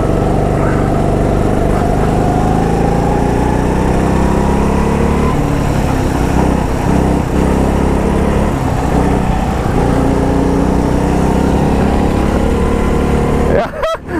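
Go-kart engine running under power, heard from the driver's seat; its pitch climbs over the first few seconds as the kart accelerates, then holds steady.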